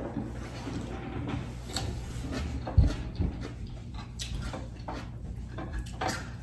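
Faint clicks of hands handling food at a dining table over a low room hum, with one dull thump about three seconds in and a lighter one just after.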